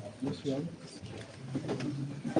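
Low, indistinct voices murmuring in a room, no words clear enough to make out.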